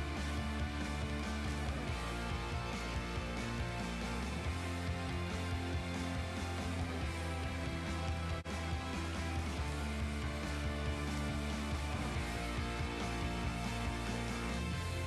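Instrumental background music under a NASA TV program slate, with sustained bass notes. It drops out very briefly about eight and a half seconds in.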